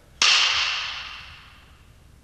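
Film clapperboard snapped shut once: a sharp crack about a quarter second in, dying away over about a second and a half. It is the slate clap that marks the start of a take for syncing picture and sound.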